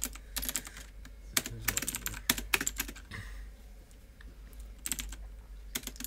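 Typing on a computer keyboard: quick runs of keystrokes, with a pause of over a second in the middle, over a steady low hum.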